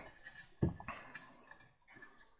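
Faint handling of a small wooden mouse trap and its thread: one soft knock about half a second in, then a few small clicks and rustles.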